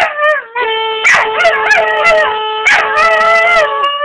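A pet dog howling in several wavering phrases, its pitch sliding up and down. Under the howls is a steady held note that starts about half a second in.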